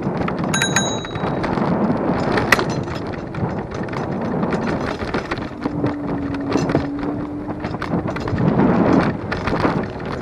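Superpedestrian electric scooter riding along a paved path: wind buffets the microphone and the wheels rumble and rattle over the surface. A bell rings once about half a second in, and a short steady hum sounds about six seconds in.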